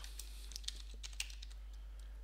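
Computer keyboard being typed on: a run of faint, separate keystrokes spread irregularly across the two seconds.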